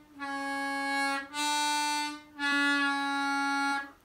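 C diatonic harmonica played on the hole 1 draw: three held notes, the first and last bent down a semitone from the natural D, the middle one at the unbent D.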